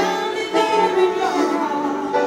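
A woman singing held notes to a live piano accompaniment.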